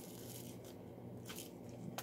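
Faint handling of small plastic diamond-painting drill containers and a drill tray: a few soft clicks spread across the two seconds over a low steady hum.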